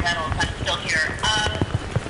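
A muffled, unclear voice speaking, with sharp clicks or knocks about three a second.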